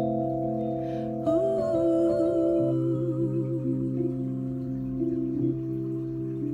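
Piano playing slow, sustained chords, with a wordless sung note held with vibrato over them from about one to three and a half seconds in.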